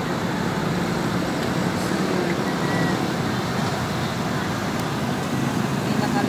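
Steady, even road traffic noise with a continuous low hum.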